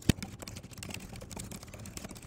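Fast typing on a computer keyboard: a quick, continuous run of key clicks. It opens with two low thumps at the very start.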